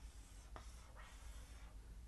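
Faint strokes of a marker drawn across a whiteboard, in two passes, as lines are drawn around the answer.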